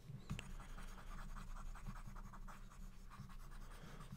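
Stylus rubbing in quick repeated back-and-forth strokes on a tablet screen while erasing digital ink; faint.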